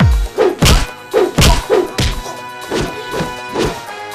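Film fight-scene punch sound effects: a rapid run of heavy whacks, about two a second, over a background score of sustained tones.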